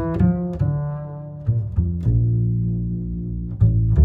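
Veena music: a run of plucked notes that ring on, then a low note held for about a second and a half before the next pluck near the end.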